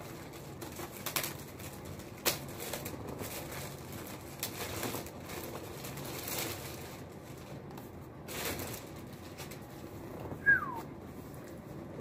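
Clear plastic wrap being peeled and crumpled off a new laptop: irregular crinkling and rustling with light handling knocks. About ten and a half seconds in there is one short squeak that falls in pitch.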